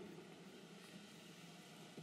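Near silence: faint steady hiss of room tone.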